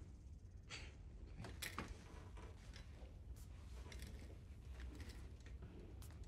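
Quiet room ambience with a low steady hum, a soft breath about a second in, then scattered faint rustles and clicks.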